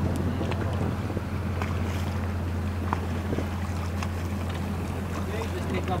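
Boat engine running steadily, a low, even drone.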